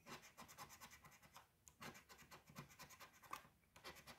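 A coin scraping the coating off a scratch-off lottery ticket in rapid, faint strokes, with a brief pause near the end.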